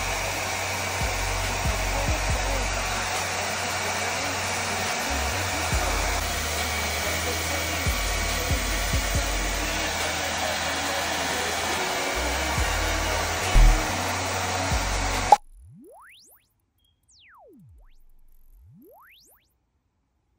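Hand-held Conair hair dryer blowing steadily while hair is blow-dried. It cuts off suddenly about fifteen seconds in, and the sound drops away to quiet.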